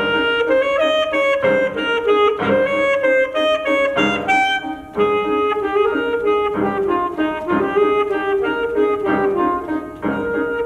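Saxophone playing a solo melody, a run of short and held notes, with a brief break about five seconds in.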